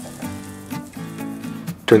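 Background music with held notes that change a few times, and a voice starting just before the end.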